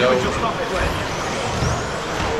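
Electric 1/10-scale 2WD RC buggies racing on an indoor carpet track: a steady noise of motors and tyres, with a brief rising whine near the middle, under a spoken word and other voices.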